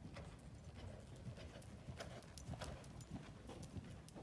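A horse's hooves striking sand arena footing at a canter: a run of soft hoofbeats, a few a second.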